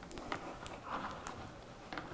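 Faint rustling of a canvas Hermès Herbag being handled and fitted back together by hand, with a few light clicks and taps from its parts.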